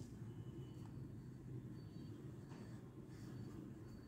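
Quiet room tone: a steady low hum, with faint, brief high chirps now and then.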